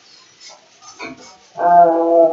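A single loud, held note, steady in pitch with a horn-like, buzzy tone, starting near the end after a few faint clinks.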